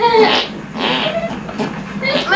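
Kids' high-pitched squealing laughter in a few short bursts.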